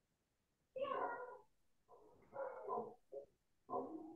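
An animal's cries: four short pitched calls, the first falling in pitch.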